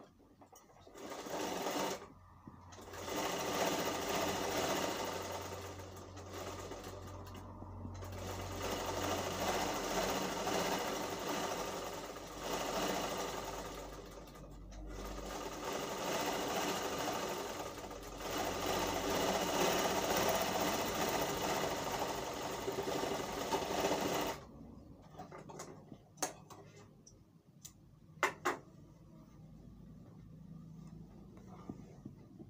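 Sewing machine running seams in spells, speeding up and slowing down, with short pauses between runs. It stops about 24 seconds in, followed by a few light clicks of handling.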